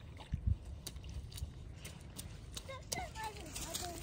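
Wellington boots splashing and stepping in a shallow puddle on gravel, soft splashes and small crunches, with low wind rumble on the microphone.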